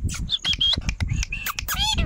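Rose-ringed parakeet giving a series of short, high-pitched squawking calls, with a longer call near the end.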